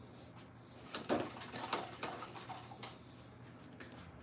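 A paintbrush being rinsed in a container of water: a few short sloshes and clicks about one to three seconds in, the first the loudest.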